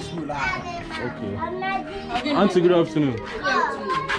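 Children's voices chattering and calling out, several at once, with no clear words.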